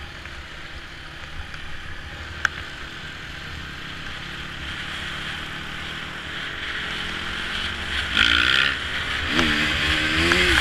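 Honda dirt bike engine running under a growing throttle as the bike picks up speed, with wind and tyre noise on the helmet camera's microphone. There is one sharp click about two and a half seconds in. Near the end the engine note twice rises and falls in pitch as it is revved.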